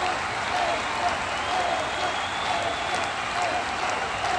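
A large audience applauding steadily, with voices in the crowd.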